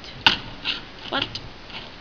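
A single sharp knock about a quarter second in, a plastic Transformers Wheelie toy truck set down on a table, followed by a few fainter short handling sounds.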